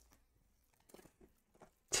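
A few faint, short clicks in a quiet room, about a second in, with a voice starting right at the end.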